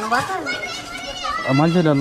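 Voices only: high children's voices talking and calling, then a lower adult voice saying "I don't know" near the end.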